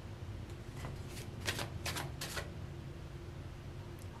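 Tarot cards being handled as a card is drawn from the deck: a quick run of soft card rustles and slides in the first half, then quiet room noise.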